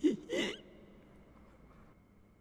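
A person's short breathy gasp, its pitch rising, lasting about half a second.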